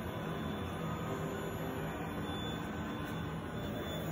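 Steady hum and hiss of an electric fan running in a small room, with a few faint held tones underneath.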